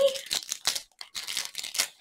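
Clear plastic sleeve around a rolled canvas crinkling as hands pull and work at its sealed end to open it, a string of short irregular crackles.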